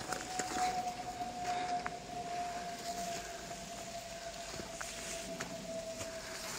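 A siren holding one steady tone that sinks slowly in pitch. Faint footfalls and rustling in the undergrowth lie beneath it.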